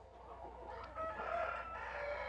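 A large flock of white broiler chickens clucking softly, many short calls overlapping, thickening from about a second in.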